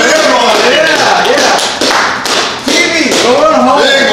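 Tabletop prize wheel spinning, its pointer clicking against the pegs on the rim, with people's voices over it.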